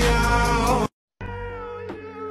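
A pop song playing, cut off abruptly about a second in. After a short silence, quieter music with wavering, gliding high notes begins.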